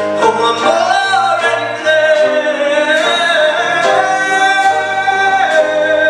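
Male vocalist singing live into a handheld microphone over instrumental accompaniment, holding long notes that bend in pitch.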